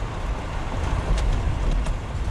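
Steady low engine and road rumble inside the cab of a diesel truck driving in city traffic, with two faint clicks in the second half.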